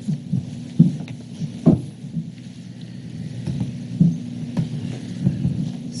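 A steady low hum in the meeting room's audio, with a few scattered soft knocks and shuffles as people move about.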